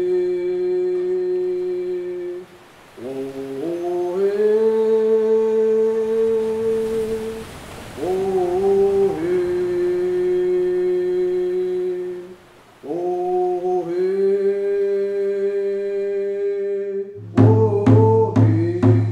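A man's voice humming a slow chant in long held notes, with short breaths between phrases. Near the end a hand drum begins beating steadily, about two strikes a second.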